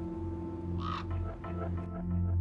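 A crow giving one short harsh caw about a second in, over soft sustained background music.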